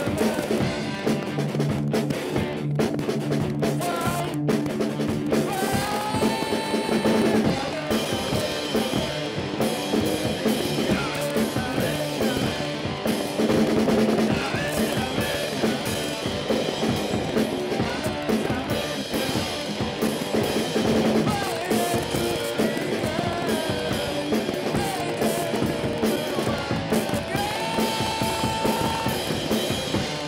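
Electric guitar and drum kit playing a rock song together, the drums struck steadily throughout with cymbals.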